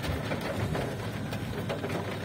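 Rain pattering on a car's roof and windshield, heard from inside the cabin: a steady hiss dotted with many small taps.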